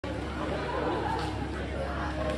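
Indistinct chatter of several people talking in a large room, over a low steady hum.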